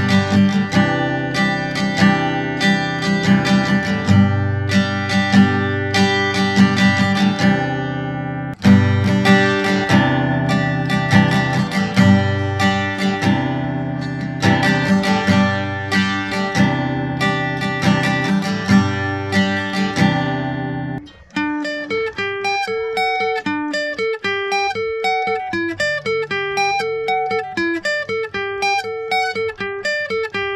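Steel-string acoustic guitar strummed in full chords, first on old stock strings and, after a short break about eight seconds in, on new Clifton phosphor bronze coated strings. About 21 seconds in it changes to fingerpicked single notes in a repeating arpeggio pattern, back on the old strings.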